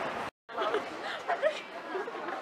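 Indistinct chatter of passers-by talking in the street, with a few louder syllables just past the middle. Near the start the sound cuts out completely for a moment, and the voices begin after the gap.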